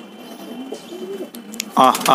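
Domestic pigeons cooing softly, low and wavering. Near the end a man's voice cuts in with a loud drawn-out 'aa', calling the birds over.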